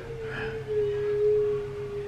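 A single steady, pure tone held for about two seconds, dropping slightly in pitch a little under a second in.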